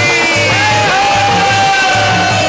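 Live devotional bhajan music: a held melody line gliding slightly in pitch over a steady, repeating drum beat.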